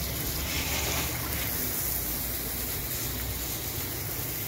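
Water running and splashing over tiled paving as the sand and mud are washed off, a steady rush with a low rumble underneath.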